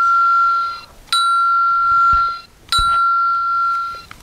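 A bell rung three times, about every second and a half, each a clear single high ring held for more than a second before it stops.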